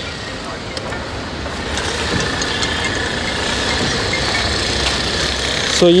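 A motor vehicle engine running nearby, a steady rumble that grows slightly louder over a few seconds.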